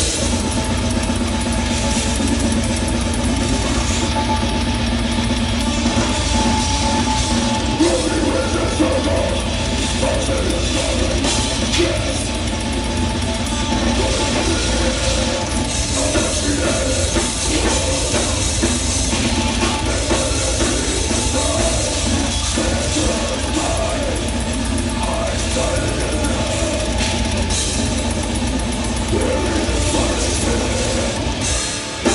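A live metal band playing loud and dense: distorted electric guitars over a pounding drum kit, keeping up a steady wall of sound.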